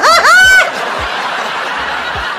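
A man laughing hard in high, cackling whoops that rise and fall in quick succession and stop after about half a second, followed by quieter steady background sound from the show.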